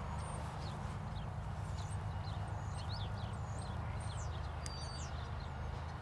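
Small birds chirping again and again, short high calls scattered throughout, over a steady low hum.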